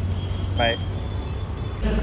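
Steady low rumble of road traffic passing close by, under a man's single spoken word.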